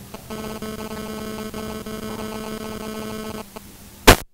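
A steady electrical buzz: several even tones held over a low hum, coming in about a third of a second in and cutting off near the end.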